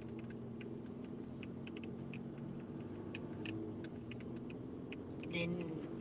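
Steady low hum of a car's engine and tyres heard from inside the cabin while driving, with scattered faint ticks.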